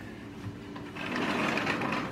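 A sliding door rolling along its track, a steady rumbling noise that starts about a second in and grows louder.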